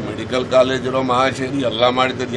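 Speech only: a man talking in Kannada, held close to a phone microphone.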